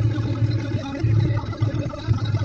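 A car's engine and road noise heard from inside the cabin: an uneven low rumble.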